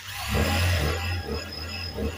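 Industrial lockstitch sewing machine starting up and then running steadily with a low hum, driving the bobbin winder on top of the machine to fill a bobbin with thread.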